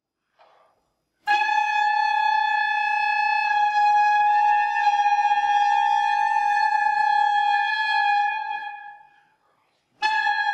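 A solo woodwind holds one long high note, entering sharply and sustained for about seven seconds on one pitch before fading away, as the opening of a concerto for three wind soloists.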